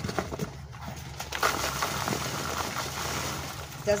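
Dry oak leaves pouring out of a tipped plastic nursery pot into a cardboard box: a crackling rustle that swells about one and a half seconds in and dies away near the end.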